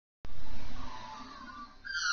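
Rumbling rustle of movement close to the microphone as the recording starts, loudest for about half a second and then fading, with a short falling squeak-like tone near the end.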